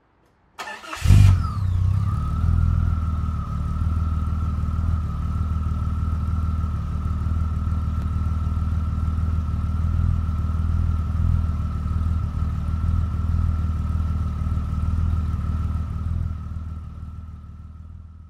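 A DeLorean DMC-12's V6 engine starting about half a second in, then idling steadily with a thin high whine over it, fading out near the end.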